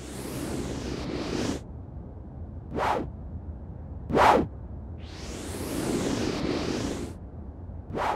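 Cartoon whoosh sound effects of a Numberjack flying in to land. A long swoosh comes first, then two short quick swishes about three and four seconds in, then another long swoosh.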